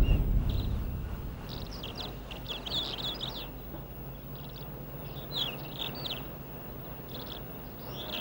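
Small birds chirping in quick runs of short, high, falling notes, in two clusters a few seconds apart, over a low steady hum. At the start, a deep drum stroke from the background score fades out.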